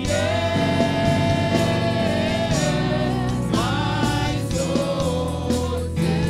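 Church worship singers singing a gospel song together into microphones, backed by a live band. The voices hold long notes, the first for about two and a half seconds.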